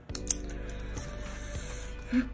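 Light background music under a few small hard clicks, the sharpest about a third of a second in, of a plastic paint marker being handled and set down on a cutting mat.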